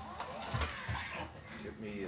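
Wrapping paper crinkling and tearing in a few short crackles as an Airedale terrier noses and pulls at a wrapped present, under a faint voice.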